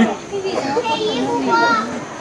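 Children's high voices talking and calling out.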